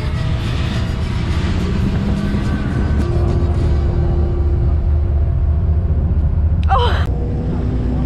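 A boat's engine rumbles steadily with wind and water noise aboard the moving water bus, under background music. A short gliding voice sounds about seven seconds in.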